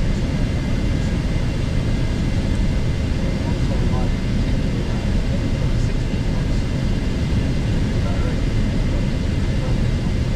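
Steady low rush of airflow and engine noise on the flight deck of a Gulfstream G650 business jet in descent.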